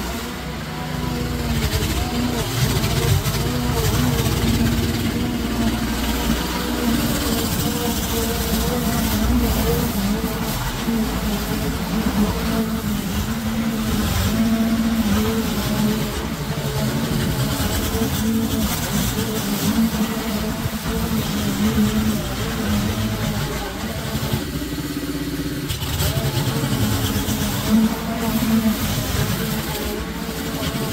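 Petrol walk-behind lawn mower engine running steadily under load as it cuts through long, thick grass, its pitch wavering slightly as the load changes.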